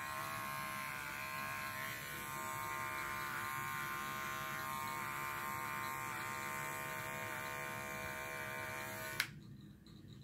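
Electric dog-grooming clippers running with a steady hum as they clean up the edge of a poodle's rosette, then switched off with a click about nine seconds in.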